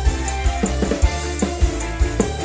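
Live dangdut band music, loud, with a steady beat of bass-drum hits and short drum strokes that slide down in pitch.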